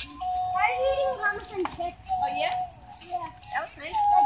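Children and adults talking and calling out in the background, in short overlapping snatches of speech. A steady high-pitched tone runs underneath.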